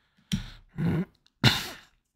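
A man's short non-word vocal sounds, three in quick succession, the last one breathy.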